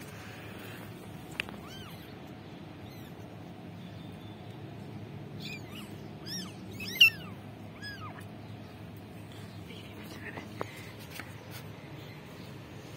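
Young kittens mewing in short, high-pitched arching calls, a cluster of them in the middle with the loudest about seven seconds in: hungry kittens calling during syringe feeding. A couple of sharp clicks sound early and near the end.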